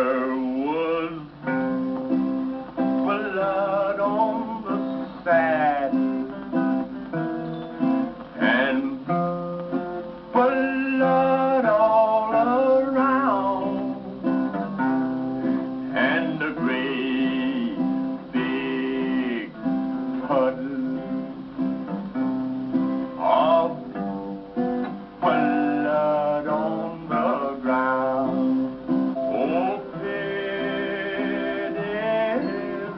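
A man singing a slow song with guitar accompaniment, his held notes wavering with vibrato.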